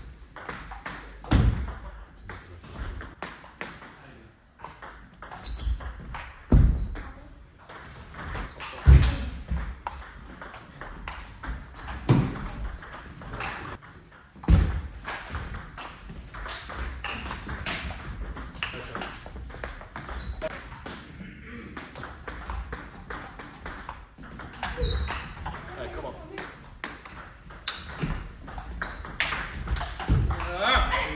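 Table tennis rallies: the celluloid ball clicking repeatedly off the table and the rubber-faced bats, with several louder thuds among the hits.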